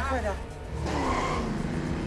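A vehicle rushes past about a second in, its engine and tyre noise falling in pitch, over tense background music, after a brief shouted voice at the start.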